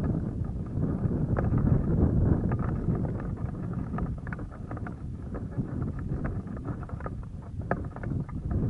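Wind buffeting the microphone in a loud, gusty rumble that eases slightly in the second half, with scattered light ticks and rustles over it.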